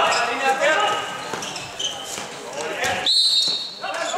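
A handball bouncing amid players' shouting voices; about three seconds in, a referee's whistle blows once, one steady high note lasting just under a second.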